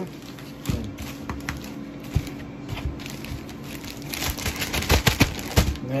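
Plastic zip-top bag and plastic-wrapped sausage tray being handled: scattered light knocks and taps, then a denser stretch of plastic crinkling about four seconds in.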